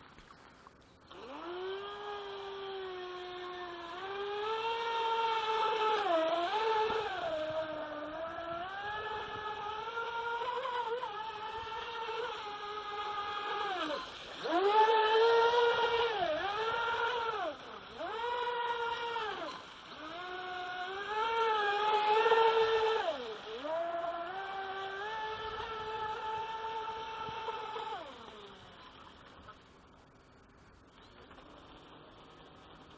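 Feilun FT011 RC speedboat's 4S brushless motor whining, its pitch rising and falling with the throttle and dipping sharply several times before climbing again. It starts about a second in and cuts off near the end.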